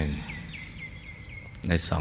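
A bird calling faintly: a quick run of about five short falling chirps, about four a second, in a pause between a man's spoken words.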